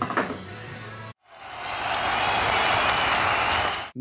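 Background music with a short laugh, cut off about a second in; then a crowd applauding and cheering fades in and runs loud for about two and a half seconds, an edited-in sound effect.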